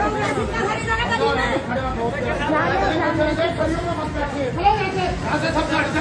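Several people talking over one another, a steady chatter of voices with no single clear speaker.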